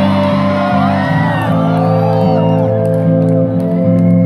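Live band playing a song, with held keyboard chords over low notes that change every half second or so, and whoops and shouts from the audience.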